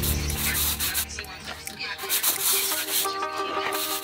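Scraping and rubbing of tile setting: a trowel and terracotta tiles worked into wet mortar in short, uneven strokes, over background music that grows clearer in the second half.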